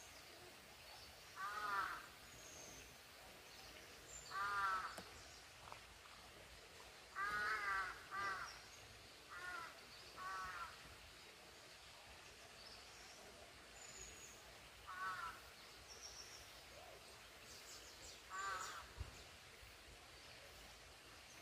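A crow cawing on and off, single and paired caws every few seconds, with faint high chirps of small birds now and then.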